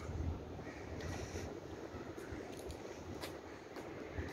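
Faint street ambience: a low, steady rumble of road traffic mixed with wind on the microphone.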